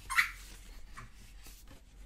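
A dog's squeaky toy squeaks once, short and high, about a quarter second in, followed by faint handling of a sticker book.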